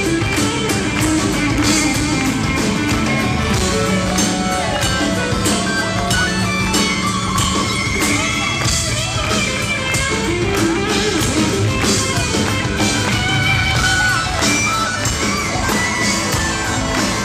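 A live rock band playing, heard from within the audience: guitar over drums keeping a steady beat, with keyboards.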